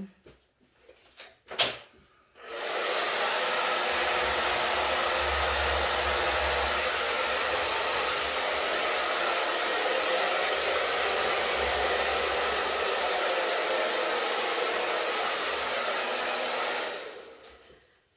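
Handheld hair dryer, after a click, starting about two seconds in and blowing steadily to push wet acrylic paint across a canvas in a Dutch pour, then winding down shortly before the end.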